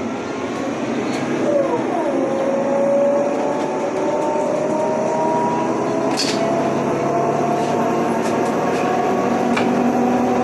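City bus engine and drivetrain heard from inside the bus as it pulls away and speeds up. Its whine dips in pitch about two seconds in, then climbs slowly as the bus gathers speed. A sharp click comes about six seconds in.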